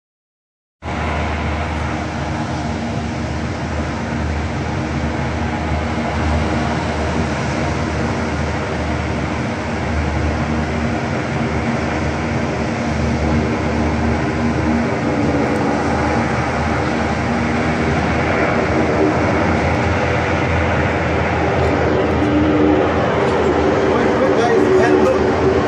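US Navy LCAC assault hovercraft's gas turbines and ducted propellers running in a steady drone that grows slowly louder as the craft approaches.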